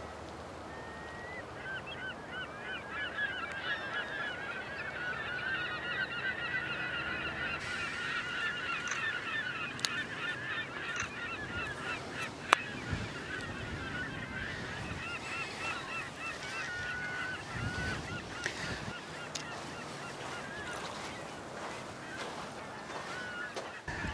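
A flock of birds calling: many short, overlapping calls in a constant chatter that thins out in the second half. There is a single sharp click about halfway through.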